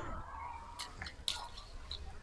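Faint rustling of leaves and a few small snaps and clicks as a small green fruit is plucked from a tree branch by hand.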